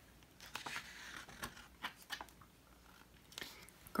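Pages of a picture book being turned by hand: faint paper rustling with a few soft clicks, starting about half a second in and settling by about two seconds.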